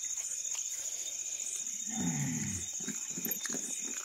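Crickets chirring steadily at night. About two seconds in, a short low call falls in pitch.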